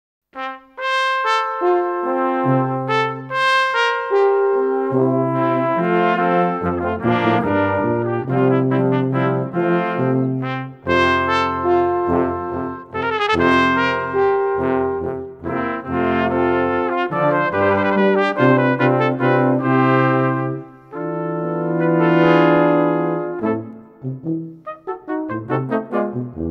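Brass quintet of two trumpets, horn, trombone and tuba playing a minuet. The trumpets carry the tune over a tuba bass line, and the notes turn short and detached near the end.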